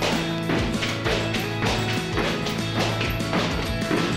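Heavy battle ropes slapping the floor as they are swung in waves, about two slaps a second, over background music.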